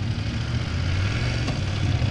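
Motorcycle engine running steadily at low speed, around 20 km/h, a low even hum under a haze of wind and road noise.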